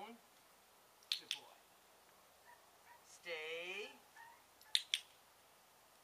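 A dog-training clicker clicked twice, each a sharp double click (press and release): once about a second in and once near the end, marking the puppy's correct down. Between the clicks a person says one drawn-out word.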